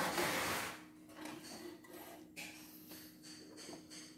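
Hands rethreading the upper thread of a CNY E960 embroidery machine after the thread broke: a brief rustling rush at the start, then small rubs and clicks of handling over a steady faint hum.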